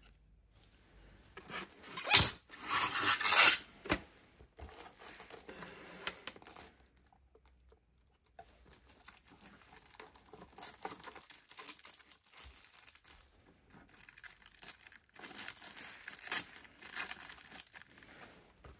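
Plastic packaging being handled, rustling and tearing: a loud tearing rustle about two to three and a half seconds in, then quieter crinkling on and off, louder again near the end.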